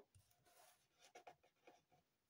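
Near silence, with a few faint soft rustles of paper pieces being handled on a cutting mat.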